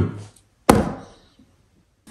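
A single sharp knock about two-thirds of a second in, dying away over about half a second.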